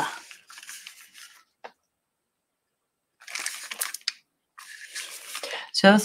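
Faint scratchy rustling in a few short patches, with a couple of light clicks: a small paintbrush stroking gold acrylic paint around the edge of an ornament.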